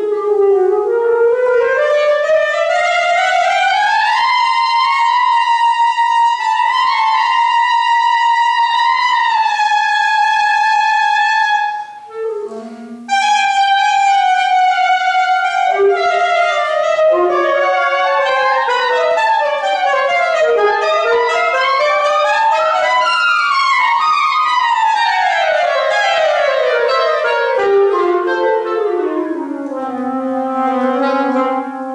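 Clarinet and saxophone duet playing long sustained notes in slowly rising and falling lines. After a short break about twelve seconds in, the two instruments move in opposite directions and cross, then settle on a low held note near the end.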